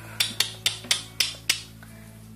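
A run of six sharp clicks, slightly uneven at about four a second, stopping about a second and a half in, over a steady low hum.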